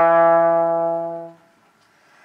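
Trombone holding a long low note, rich in overtones, that ends about a second and a half in.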